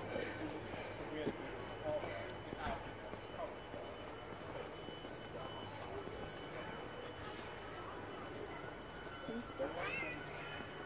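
Footsteps on a paved path with faint voices of people some way off. A brief rising sound comes near the end.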